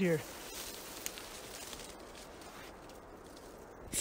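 Quiet outdoor background hiss with faint rustling and one small click about a second in.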